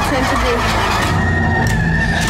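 Horror trailer soundtrack: a girl screaming over a loud, dense rumbling drone, with a high sustained tone coming in about halfway through.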